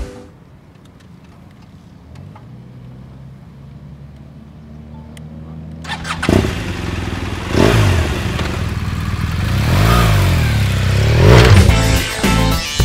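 BMW R 1200 GS Adventure's boxer-twin engine: quiet for the first several seconds, then about six seconds in it comes in loud, revving, its pitch rising and falling several times as the bike is ridden.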